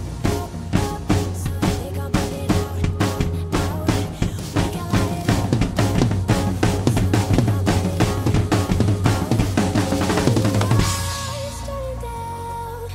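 PDP X7 acoustic drum kit playing a fast, busy groove of bass drum, snare and cymbals over an electronic backing track with a heavy, steady bass. Near the end the drumming stops on a cymbal crash, leaving sustained synth tones.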